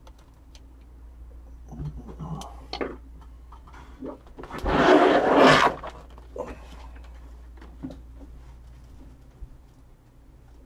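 Handling noises of card boxes and packaging on a table: scattered light clicks and knocks, and one loud scraping rasp lasting about a second midway, over a steady low hum.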